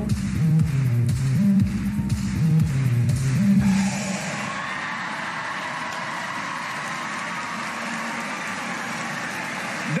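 Music with a heavy, stepping bass line for the first few seconds; it stops just under four seconds in, and a large audience cheers and applauds through the rest.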